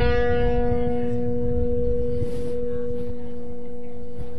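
Electric guitar ringing a single note, struck at the start and held steady with long sustain.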